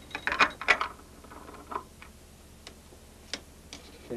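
Quarter-inch tape being threaded on a Nagra reel-to-reel tape recorder: a quick cluster of clicks and rattles of the reel and machine parts in the first second, then a few separate clicks.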